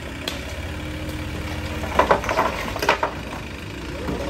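Tipper truck's engine idling steadily with the bed raised, with a steady whine in the first half. From about halfway through come several loud clattering knocks of stones.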